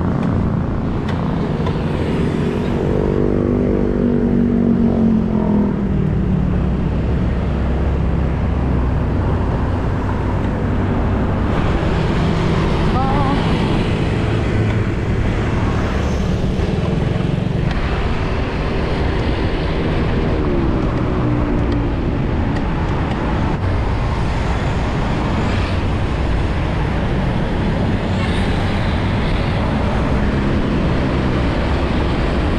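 A Yamaha Grand Filano Hybrid scooter's 125 cc single-cylinder engine pulling out and riding in city traffic, buried in heavy, steady wind and road noise. Its engine note rises and falls a few seconds in, with another faint swell about two-thirds of the way through.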